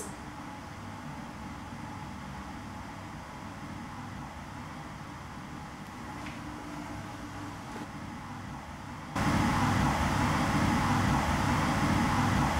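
Low, steady hiss and hum of a quiet underground room, with a faint tick or two. About nine seconds in it jumps suddenly to a much louder, even hiss: the recording replayed with its gain turned up to bring out a possible faint voice.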